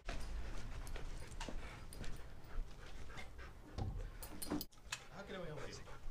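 Faint sounds from a Siberian husky over a steady low rumble of background noise.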